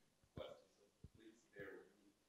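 Faint, distant speech: an audience member's question picked up off-microphone, with a couple of small clicks.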